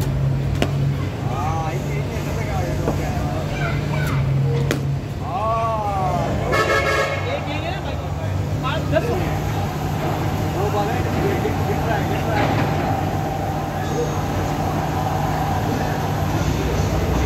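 Indistinct voices over a steady low hum, with a short horn-like toot about six and a half seconds in and a held tone through the second half. Two sharp knocks come in the first five seconds.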